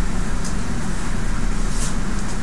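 Steady low hum and rumble of classroom room noise, with a couple of faint light ticks.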